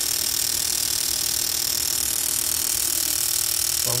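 Injector flushing stand running with the Lexus LX 570's fuel injectors pulsing cleaning fluid into graduated cylinders: a steady mechanical hiss and buzz, near the end of the flushing cycle.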